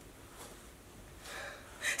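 A woman's faint audible breathing in a pause between spoken lines, with a soft intake of breath about a second and a half in.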